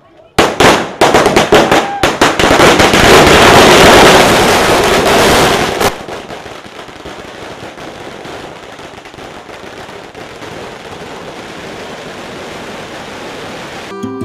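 A long string of firecrackers going off. Rapid, overlapping bangs start about half a second in and run thick and loud for about five seconds, then drop suddenly to a fainter, continuous crackle.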